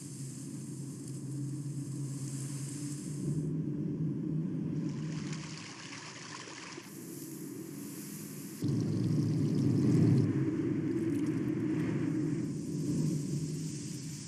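Low, steady rumbling ambience from the opening of a short promotional film's soundtrack, played through a screen share, growing louder with a sudden step up about eight and a half seconds in.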